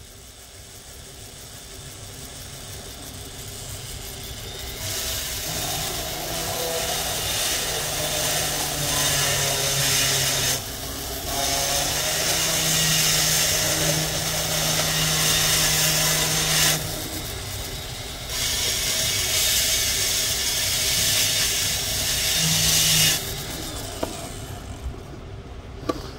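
Rotary carving bit grinding a wet fire agate in three passes of about five seconds each, a steady hiss with the tool's motor hum beneath, broken by short pauses about ten and seventeen seconds in.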